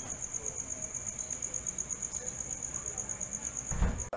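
A cricket's steady high-pitched trill, pulsing about ten times a second, cut off suddenly at the end. A short low thump comes just before it stops.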